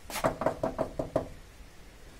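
Knocking on a wooden plank door: a quick run of about six knocks in the first second or so, then quiet.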